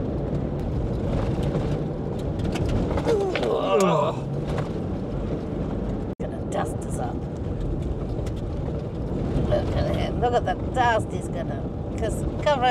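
Cabin noise of a 4WD driving fast over gravel corrugations: a steady, dense rumble of tyres and engine. A voice comes over it about three seconds in and again near the end, and the sound drops out briefly about six seconds in.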